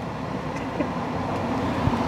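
Steady cabin noise of a Tesla electric car rolling slowly forward: an even road and tyre hush with no engine note, growing slightly louder.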